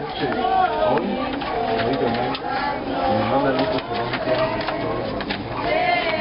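Several people, children among them, talking over one another in excited chatter.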